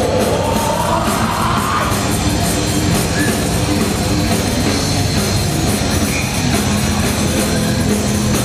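A live hardcore band playing loud, with distorted guitars, bass and drums, and a screamed vocal rising in pitch over the first two seconds.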